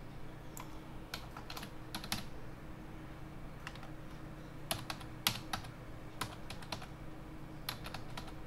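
Computer keyboard keys tapped in short, irregular clusters of a few strokes each, over a steady low hum.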